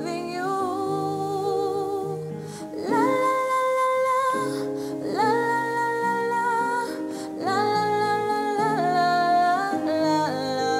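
A woman singing a slow love ballad in long held phrases, with sustained chords on an electronic keyboard underneath.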